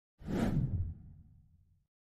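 Whoosh transition sound effect with a low rumble under it: it starts sharply, the hiss fades within about a second, and the rumble dies away over the next second.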